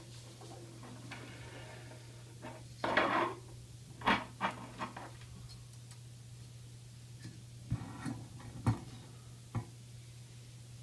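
Small steel valves and springs clicking and clinking as they are handled and fitted into the bores of a transmission valve body, in scattered sharp taps, with a short rustle about three seconds in. A low steady hum runs underneath.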